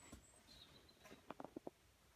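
Near silence: faint room tone, with a quick run of about four faint clicks about a second and a half in.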